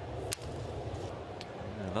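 Sharp crack of a baseball bat meeting a pitch about a third of a second in, sending a ground ball toward shortstop, over the steady murmur of a stadium crowd.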